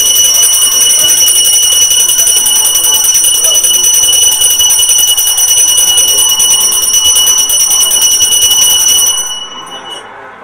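Temple bell rung rapidly and without a break during aarti, a bright metallic ringing that stops about nine seconds in.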